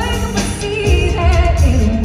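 A woman singing live into a microphone with vibrato, over keyboard and band accompaniment with a heavy bass, through a concert sound system.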